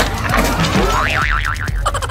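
A cartoon-style "boing" sound effect, a wobbling tone that quickly warbles up and down for under a second, starting about a second in, over background music with a steady beat.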